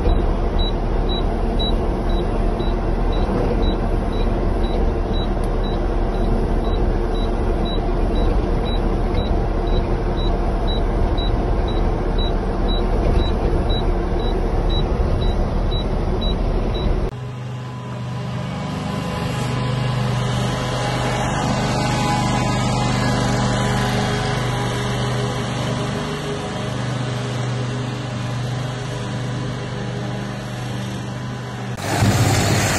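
Small snow-clearing tractor's engine running as it plows, heard from its cab, with a short high beep repeating about twice a second. About seventeen seconds in, the sound cuts to a different steady engine hum with a low drone.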